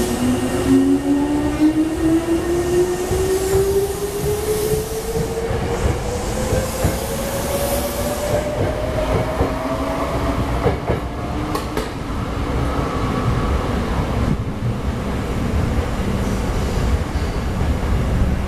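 Hankyu 6000 series electric train pulling out of the station. Its resistance-controlled traction motors give a whine that rises steadily in pitch over about ten seconds as the train gathers speed, over a low rumble of wheels on rail. A few sharp clicks come a little past the middle.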